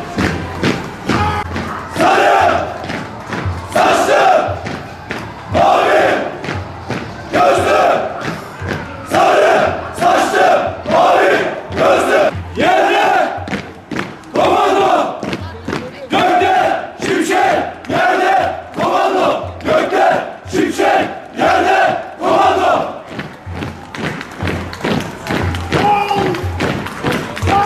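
A marching column of Turkish soldiers chanting a military march in unison: loud, shouted lines from many male voices, coming in a steady rhythm about once a second.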